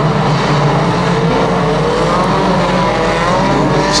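A pack of banger racing cars running hard around a shale oval: several engines drone together at once, with one engine note rising slowly in pitch through the middle.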